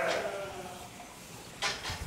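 A sheep bleating, a wavering call that fades out in the first half second, followed by a short hiss near the end.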